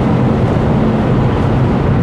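Steady road and wind noise inside the cabin of an Ora Funky Cat electric car driving at motorway speed on a wet road: an even low rumble with no engine note. It is unpleasantly loud, a sign of the car's weak sound insulation.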